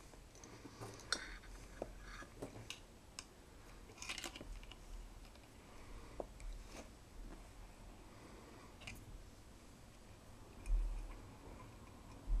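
Faint scattered clicks and rustles of hands handling thin wires and a soldering iron inside a metal receiver case, with a low bump near the end.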